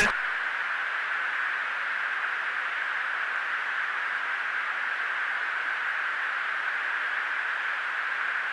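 Steady hiss on a fighter jet's cockpit radio or intercom audio, thin and narrow like a radio channel, with no one talking.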